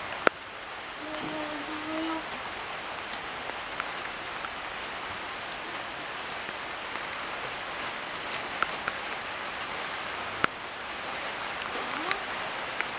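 Light rain falling steadily: a soft, even patter broken by a few sharp clicks.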